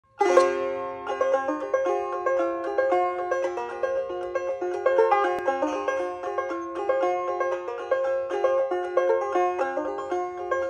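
Solo banjo being picked: a ringing chord just after the start, then a steady stream of quick, bright plucked notes.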